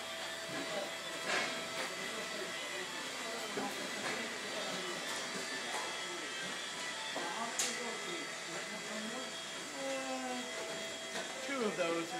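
A steady mechanical drone with indistinct voices over it and a couple of sharp clicks, the voices growing clearer toward the end.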